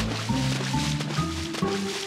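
Cartoon background score: short notes stepping up and down over a low bass line, a new note about every quarter second.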